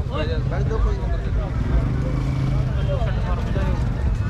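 Men's voices talking nearby over a steady low rumble, with the loudest talk in the first second.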